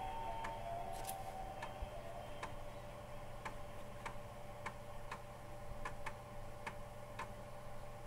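Sharp, irregular clicks, roughly one or two a second, from a 3.5-inch floppy disk drive as its head steps while reading the disk's MP3 files, over a steady low hum. A held musical tone stops about a second in.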